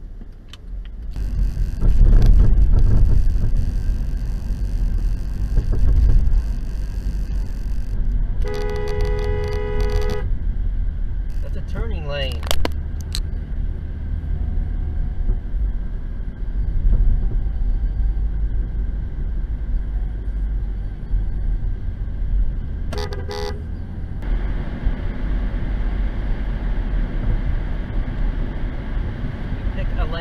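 Steady low rumble of road and engine noise heard from inside a moving car. A car horn sounds for about a second and a half about nine seconds in, and again in a short toot about twenty-three seconds in.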